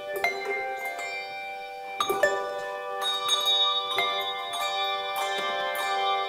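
Handbell choir ringing a hymn tune: struck bell chords with new strikes about once a second, each ringing on and overlapping the next.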